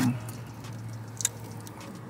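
Eating crispy fried chicken: faint chewing with a few small crunchy clicks, one sharper click a little past the middle, over a steady low hum.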